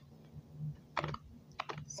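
Tarot cards being shuffled in the hands: a few light clicks of card edges, one about a second in and a quick run of three or four near the end.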